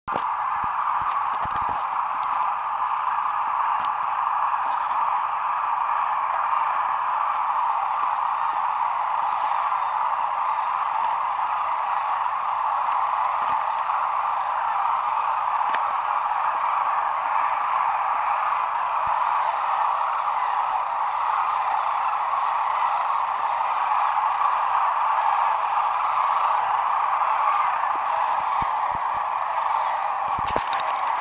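A huge mixed flock of sandhill cranes and geese calling in flight, countless overlapping calls blending into one dense, steady din.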